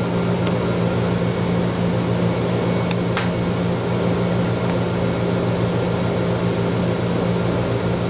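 Steady machine hum of a PECVD plasma deposition system running a plasma step: low steady tones with a high-pitched whine above them, and a single faint click about three seconds in.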